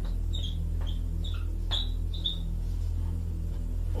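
A steady low hum with several short, high-pitched chirps over the first two and a half seconds.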